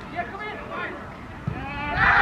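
Men shouting and calling out to each other during play in a football match, with a single thump about one and a half seconds in and the shouting growing louder near the end.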